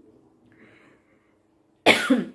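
A woman coughing: a sudden, loud cough breaks out near the end, after a quiet stretch.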